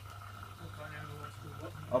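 Zanussi EW800 washing machine giving a low steady hum as it starts its fill stage while the water supply tap is still turned off, so no water is flowing in yet.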